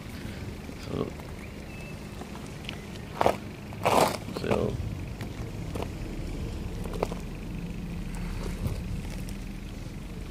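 Recumbent trike rolling along a concrete path: a steady low rumble from the wheels and frame, with a few short knocks and rattles over bumps, the loudest two about three and four seconds in.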